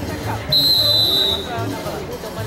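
Referee's whistle: one steady, high blast lasting just under a second, starting about half a second in, over the chatter of players and spectators.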